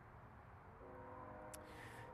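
Near silence: faint outdoor background. A little under a second in, a faint, steady chord of several tones comes in, and a single soft click sounds near the end.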